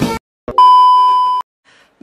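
A single loud electronic beep, held at one steady pitch for about a second and cut off sharply. It starts about half a second in, just after the dance music stops.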